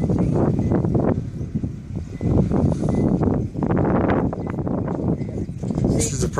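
Wind buffeting the microphone: an uneven low rumble that swells and falls, easing briefly about two seconds in.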